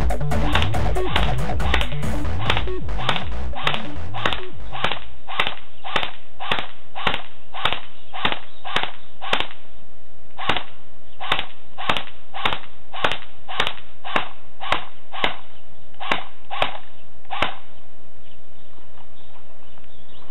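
Airsoft MP40 replica firing semi-automatic, sharp single shots in steady succession at about two to three a second, with a brief pause midway. The shots stop a few seconds before the end. Background music fades out during the first few seconds.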